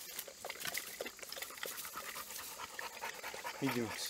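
A dog lapping water from a small bowl: a quick, irregular run of wet laps. A man's voice comes in briefly near the end.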